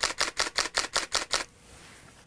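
Nikon D7000 DSLR firing a continuous high-speed burst: about nine shutter-and-mirror clicks at roughly six frames a second, stopping about a second and a half in.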